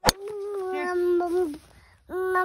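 A toddler's long, drawn-out vocal call at a nearly steady pitch, lasting about a second and a half, babbling at her mother, right after a click at the start.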